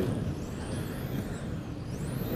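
Several electric RC touring cars' brushless motors whining high-pitched as they race, the pitch rising and falling as the cars accelerate and brake, over a low hum of the hall.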